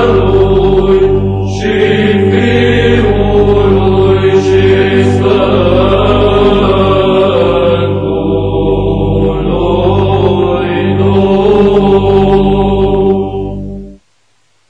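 Chanted vocal music over a steady, sustained low drone, fading out just before the end.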